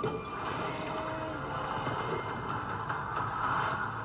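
Movie trailer soundtrack playing: a steady, dense noise of action sound effects, with faint music under it.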